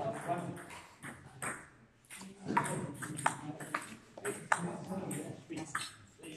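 Table tennis ball clicking sharply about half a dozen times, irregularly, over indistinct voices.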